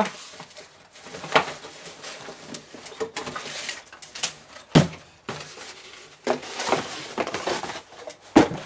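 Cardboard scraping and rustling as a boxed LEGO set is slid out of a cardboard mailer and handled, with irregular light knocks and one sharp knock a little under five seconds in.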